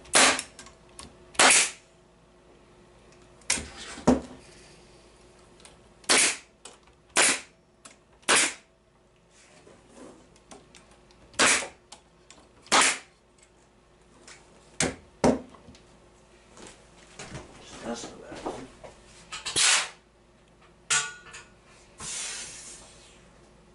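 Bostitch pneumatic stapler firing staples into wooden beehive frame joints: a dozen or so sharp shots at irregular intervals, with softer knocks of the frame being handled between them. The air supply to the stapler is giving trouble.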